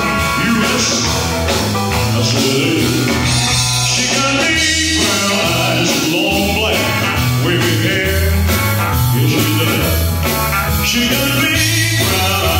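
A male singer singing with a live rock and roll band, with electric guitar and drums keeping a steady beat.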